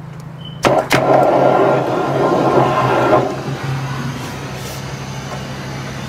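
A drain-jetting machine runs with a steady low drone while its high-pressure hose works down a blocked interceptor. Under a second in there are two sharp knocks, then a loud rush of noise for about two seconds that fades back to the drone.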